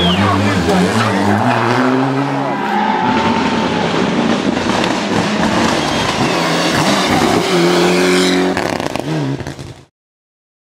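Rally cars' engines revving hard as the cars pass on a tarmac stage, with spectators' voices in the background. The sound cuts off abruptly just before the end.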